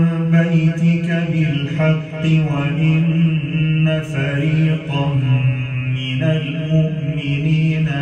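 Background vocal chant: long held sung notes over a steady low drone.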